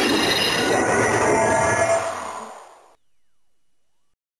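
Electronic sound effect played by an Ultraman Trigger Power Type Key toy: a loud, dense, noisy effect that holds for about two seconds, then fades out by about three seconds in.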